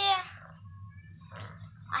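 A girl's high-pitched voice draws out the end of a word with a falling pitch, then faint rustling of a disposable diaper being handled.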